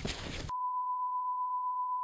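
A steady single-pitch test tone of the kind that goes with television colour bars, cutting in suddenly about half a second in after a moment of faint background hiss.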